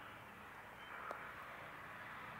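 Quiet room tone with a single faint tap about a second in, from hands handling a small digital scale and a landing light on a cloth-covered table.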